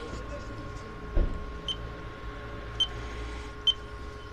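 Car-wash code keypad giving three short high beeps, about a second apart, as keys are pressed, over a steady electrical hum. A dull thump comes just after a second in.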